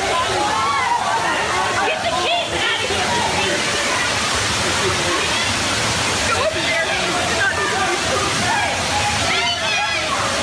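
Steady rush of water falling into the gorilla enclosure's moat, with many people's voices calling out over it throughout, some raised high about two seconds in and near the end.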